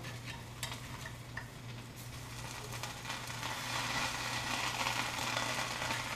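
Margarine sizzling in a hot stovetop sandwich toaster as buttered bread toasts in it, the margarine still cooking off. The sizzle grows louder about halfway through, with a few light clicks in the first second and a half.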